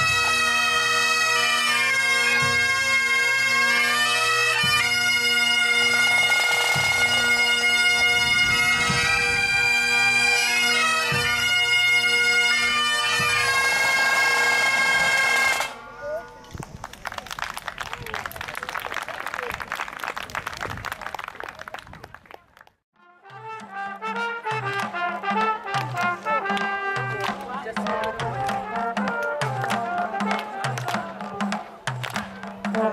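A pipe band of Highland bagpipes plays a tune over steady drones, with drums, and stops abruptly about halfway through. Applause follows for a few seconds and fades. After a cut, a brass band plays with a regular low bass note about once a second.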